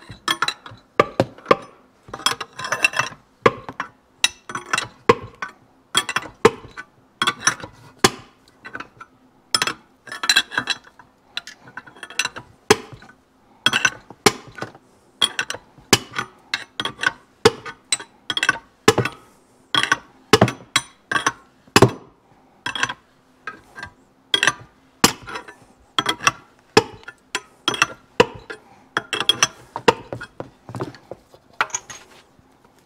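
Steel wrench clinking on the nut of a crankshaft installer tool as it is turned in short swings and repositioned, with sharp irregular metal clicks several times a second. The crankshaft is being drawn into its main bearing in the aluminium engine case.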